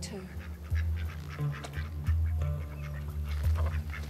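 Ducks quacking repeatedly in short calls, over a low, steady drone of background music.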